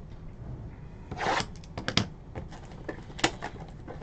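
Clear plastic shrink-wrap being torn and peeled off a cardboard trading-card box: a scratchy tear about a second in, then a string of sharp crackles and clicks.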